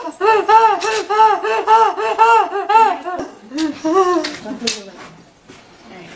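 A woman's high-pitched laughter: a rapid run of about a dozen 'ha' syllables, about four a second, for roughly three seconds, then a few lower, drawn-out vocal sounds that fade out near the end.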